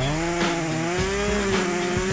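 A steady buzz from a cutting tool, like a small power tool, held for the whole stretch and rising slightly in pitch as hair is cut away.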